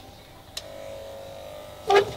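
Electric hair clippers switched on with a click about half a second in, then buzzing steadily for just over a second.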